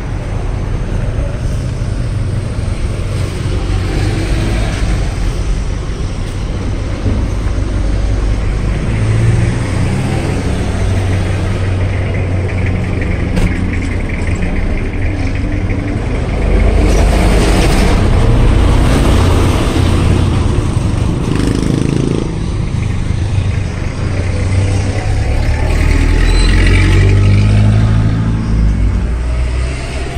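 Street traffic: cars and other motor vehicles running past close by, a steady rumble that swells louder twice as vehicles pass, once about midway and again near the end.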